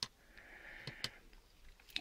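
Faint clicks of a smart battery charger's plastic push-button being pressed to change the display, with a soft breath through the nose.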